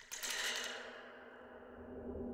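Title-menu sound effect for a horror film: a sudden hit whose bright hiss fades over about a second, leaving a steady low drone.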